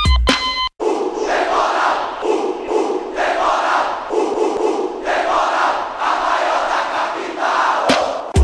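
A short electronic music beat cuts off, and after a brief gap a large stadium crowd of football supporters chants in unison, swelling in surges about once a second.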